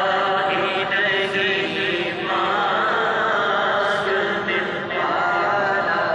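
Naat being chanted: devotional singing by voice, with long held, wavering notes.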